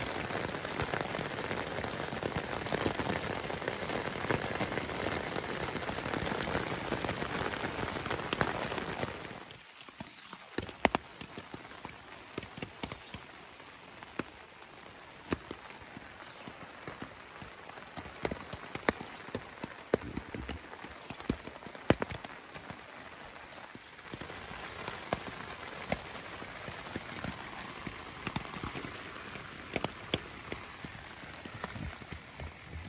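Rain falling on a tent: a steady, dense hiss for about the first nine seconds, then lighter rain with separate drops tapping on the tent fabric, then a heavier, even hiss again from about 24 seconds in.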